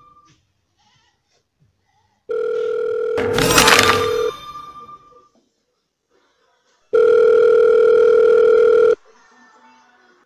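Two steady electronic tones like a telephone dial tone, each held about two seconds with a pause between. A crash sounds over the first tone and rings on after it stops.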